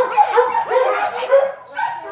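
Dogs barking in a kennel building, a rapid run of short, high barks and yips.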